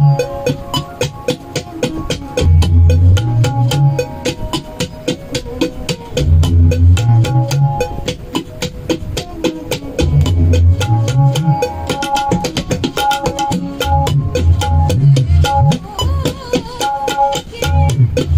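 Tabla played in keherwa taal: quick, crisp strokes on the dayan over deep, ringing bayan bass strokes whose pitch is pushed upward, in a phrase that repeats about every four seconds.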